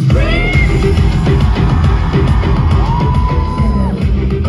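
Live rock-style K-pop music over a concert sound system, with heavy bass and drums kicking in at the start. A high sliding cry comes in the first half second and one long held high note near the end.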